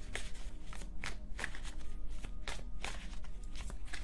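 A tarot deck being shuffled by hand: a run of irregular soft card slaps and clicks, a few a second, over a steady low hum.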